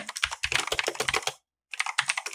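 Typing on a computer keyboard: a quick run of keystrokes, a short pause a little past halfway, then more keystrokes.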